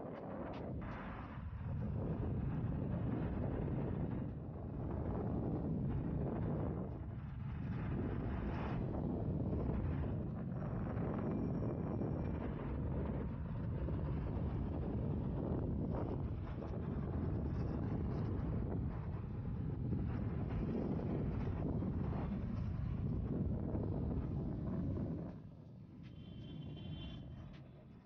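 Wind buffeting the microphone while skating at speed: a low, rushing noise that swells and dips, then falls away near the end.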